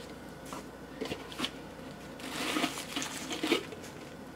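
A plastic tub being handled and opened, with a few small knocks, then a plastic bag crinkling as the salted beef bung casing is unpacked.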